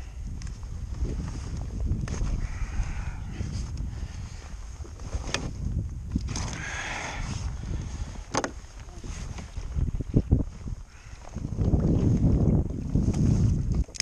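Handling noise aboard a fishing kayak on open water: a steady low rumble on the microphone, with a few sharp clicks of tackle being handled about five and eight seconds in, and a louder rumbling stretch near the end.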